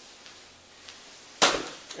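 Quiet room hiss with a few faint ticks, then about one and a half seconds in a sharp, loud click followed by a person's voice starting up.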